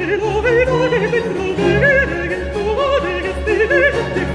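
A countertenor sings a baroque opera aria in fast, ornamented runs with a wide vibrato. He is accompanied by a period-instrument baroque orchestra with a steadily pulsing bass line.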